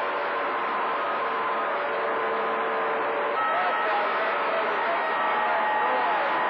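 CB radio receiver on channel 28 picking up distant skip signals: steady static hiss with faint whistling tones and weak, garbled voices under the noise.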